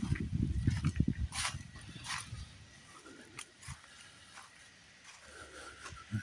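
Footsteps crunching in dry leaf litter, with low buffeting on the microphone for about the first second, then two crisp crunches before it goes quiet.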